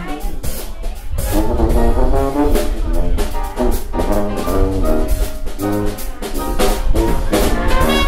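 Traditional jazz band playing: a brass lead over sousaphone, piano and drums. The trombone and clarinet join in near the end for the full ensemble.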